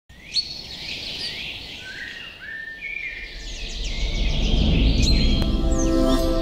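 Birds chirping and whistling, many short overlapping calls. A low rumble swells in from about halfway, and a held musical chord comes in near the end.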